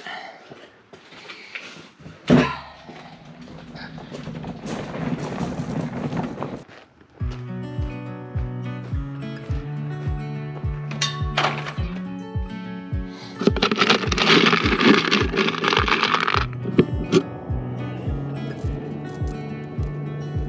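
A wheelbarrow loaded with tools rolling over gravel, with a single thunk about two seconds in. From about seven seconds in, background music with a steady beat of about two thumps a second takes over.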